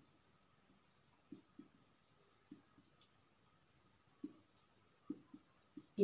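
Marker pen writing on a whiteboard: faint, short pen strokes, about eight of them, scattered across a near-silent stretch.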